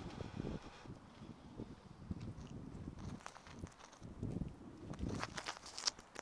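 Footsteps on grass: soft, irregular thuds of someone walking, with a burst of clicks and rustling near the end, the loudest a sharp click just before it ends.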